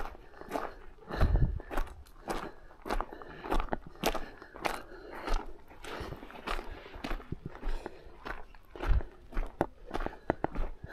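A hiker's footsteps crunching on a stony red-dirt trail, about two steps a second.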